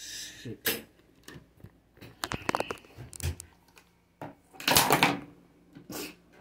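Household handling noises: a string of knocks, clicks and clatters as things are moved about, with a brief louder rustling burst about five seconds in.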